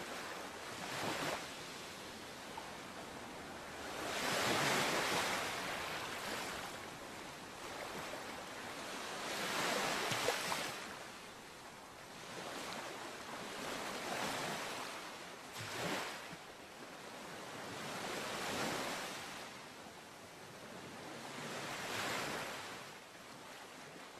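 Waves washing in, the surf noise swelling and ebbing about five times, roughly every four to five seconds.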